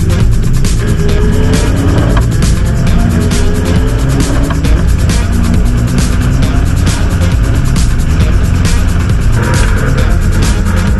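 Electronic music with a steady beat, laid over the four-cylinder engine of a turbocharged Honda S2000 race car running on track, its engine note rising slowly through the revs.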